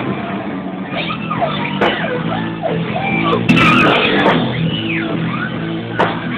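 Live rock band playing with electric guitar and bass, recorded loud and low-fidelity. There is a brief noisy burst about halfway through.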